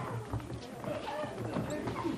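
Many feet stamping and scuffling on a stage floor as a group of actors fights, with shouts from several voices.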